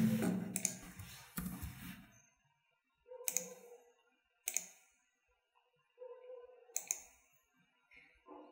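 A handful of separate, sharp clicks from a computer mouse and keyboard, spaced a second or more apart, with a paired double click near the end.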